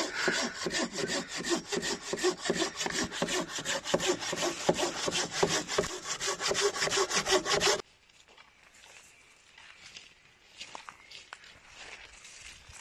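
Hand pruning saw cutting through a fallen log in quick, steady back-and-forth strokes. The sawing stops abruptly about eight seconds in.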